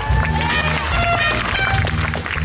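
Jazz big band playing: saxophones and brass over an electric bass line.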